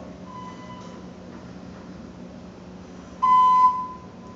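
Steady low hum of a ThyssenKrupp traction elevator cab in motion, with a faint short electronic tone near the start, then a loud electronic beep lasting about half a second near the end.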